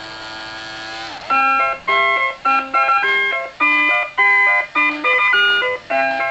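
Fisher-Price Magic Touch 'n Crawl Winnie the Pooh plush toy playing its electronic tune. A single note is held for about the first second, then comes a bouncy melody of short, clipped notes.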